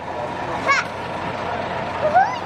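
Steady background noise with a faint constant hum, and one short high-pitched vocal cry a little under a second in.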